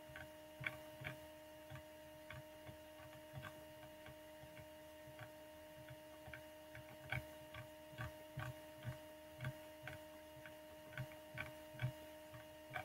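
Faint, irregular ticking clicks, roughly one to two a second, over a steady low electrical hum made of several steady tones.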